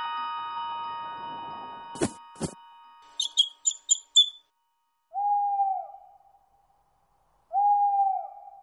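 Cartoon owl hooting twice, each hoot a single steady note dropping slightly at its end, about five seconds in and again near the end. Before the hoots, a descending run of chime notes rings out and fades, two knocks sound about two seconds in, and a quick string of small bird chirps follows around three to four seconds in.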